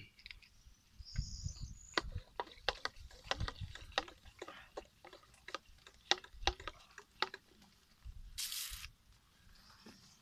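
A run of irregular sharp clicks and snaps, about fifteen over some five seconds, followed by a short hiss near the end.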